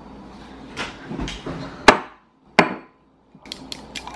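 Two sharp knocks as things are set down on a wooden table, about two and two and a half seconds in. Near the end comes a quick run of small metallic clicks as a handheld can opener is handled over a metal can.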